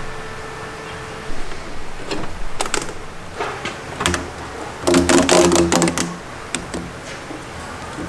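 Clicks, taps and rattles of parts being handled as a metal airbox and a ribbed rubber intake hose are fitted into a ute's engine bay, with a louder burst of clattering about five seconds in.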